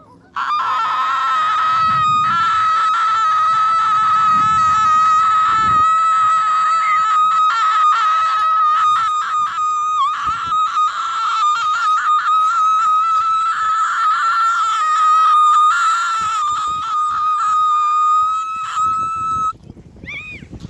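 A woman's voice singing one very high note for nearly twenty seconds, held almost steady in pitch with a slight waver, then cutting off suddenly near the end.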